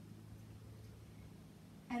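Quiet room tone: a faint, even hiss with nothing distinct in it. A woman's voice starts right at the end.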